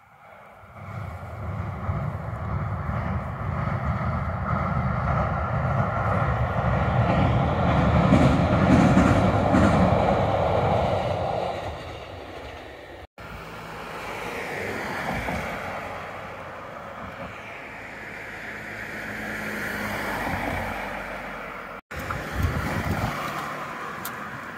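A train crossing a steel girder railway bridge: a low rumble that builds for about eight seconds and then fades away. After a break, a quieter swelling rumble with wind on the microphone.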